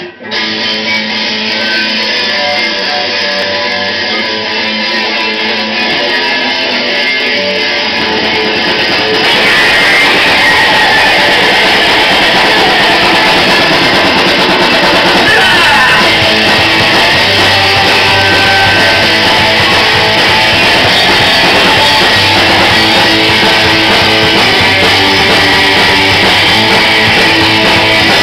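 Live punk rock band playing electric guitars through amplifiers. About nine seconds in, the music gets louder and fuller.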